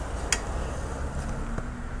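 Low, steady background rumble with a single brief click about a third of a second in.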